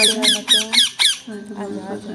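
Rose-ringed parakeet giving a rapid run of harsh squawks, about four a second, that stops a little over a second in.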